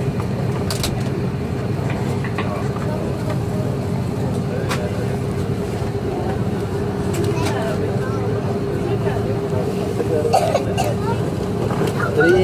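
Steady drone of an airliner's jet engines at low power while it taxis after landing, heard inside the cabin, with a steady hum and a few faint clicks.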